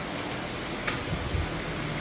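Steady workshop background noise with a single sharp click about a second in, followed by a few faint soft knocks.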